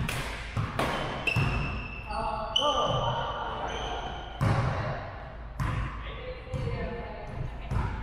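Badminton racket hits on a shuttlecock, about 0.7 s apart, in the first second and a half, with shoes squeaking on the wooden gym floor. Several more single thumps come about a second apart in the second half.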